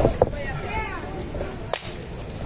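A faint drawn-out groan, then one sharp slap of a hand on bare skin near the end, the crack of a wrestling chop or hand tag.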